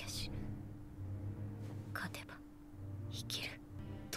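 Quiet, breathy Japanese dialogue from the subtitled anime: a few short, whispery spoken phrases over a low steady hum.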